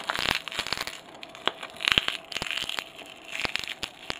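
A Samsung Omnia 2 smartphone being broken apart by hand: its plastic and metal parts crackle, snap and crunch in an irregular run of sharp clicks.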